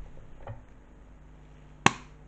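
A single sharp knock or click near the end, over a faint steady low hum in a quiet room.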